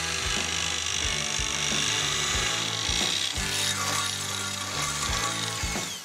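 Electric drill on a lever-feed rig boring up through the steel floor of a car-trunk safe: a steady high whine with scattered sharp clicks, fading near the end as the hole goes through. Background music underneath.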